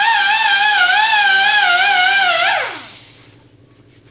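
Variable-speed right-angle air grinder with a wire brush running at speed on a rusty steel tube: a loud, steady high whine that wavers slightly in pitch, then winds down with a falling whine about two and a half seconds in.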